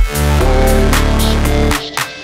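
Background electronic music: a held bass note with tones stacked above it, cutting out suddenly near the end.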